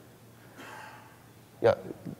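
A faint breath drawn in at the speaker's microphone, lasting under a second, followed by a short spoken "yeah".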